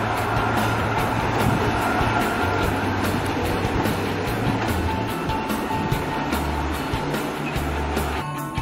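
A train running, a steady rumbling noise, under background music whose bass notes change several times in the second half.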